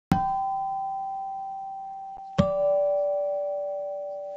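Two struck bell-like chime notes about two seconds apart, each ringing out and slowly fading, the second lower in pitch than the first: the start of a descending chime that opens the radio show.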